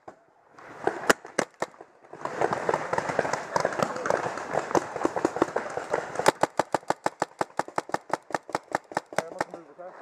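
Paintball marker firing in rapid strings of evenly spaced shots, about seven or eight a second. The strings pause briefly at the start, and from about two to six seconds in they are buried under a dense clatter of noise.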